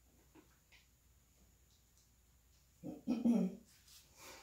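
A brief voiced sound near the end of a quiet stretch: a short call followed at once by a longer pitched one.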